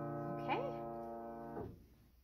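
Upright piano notes, B-flat and D held in the left hand, ringing and slowly fading, then damped off suddenly when the keys are released about one and a half seconds in.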